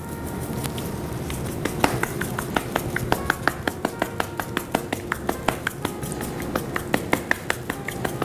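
Hand-twisted spice grinder grinding dried rosemary over a tray of vegetables: a steady run of sharp clicks, several a second, starting about a second in.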